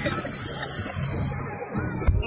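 Water splashing and sloshing as a man slips off a floating foam water mat into the lake, with voices in the background.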